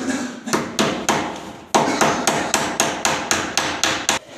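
Claw hammer striking the edge of a wooden door while a door lock is being fitted. A fast, even run of about fifteen sharp blows comes at roughly four a second.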